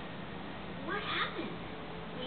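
A cat meowing once, a short call that rises and falls in pitch about a second in, over a steady low hum.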